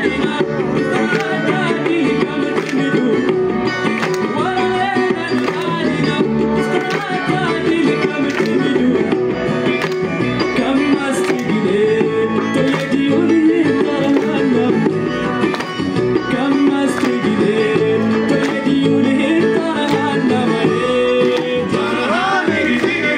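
A live band plays Tuareg desert-blues music with a bluegrass band, steady and loud throughout. Electric guitar, acoustic guitar, banjo and a hand drum are playing, heard from the crowd.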